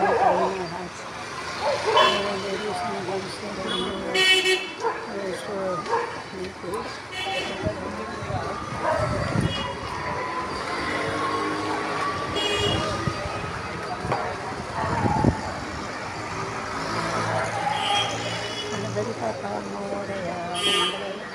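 Street traffic: short vehicle-horn toots sound several times over a background of voices and passing vehicles, with a long, slowly rising tone near the middle.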